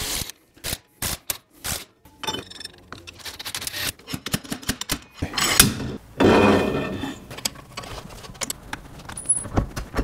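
Metal clicks, knocks and scraping from work on a classic car's rear axle as the axle-retaining nuts come off and the axle shaft is worked out of the housing. A louder, longer scraping stretch comes a little past halfway.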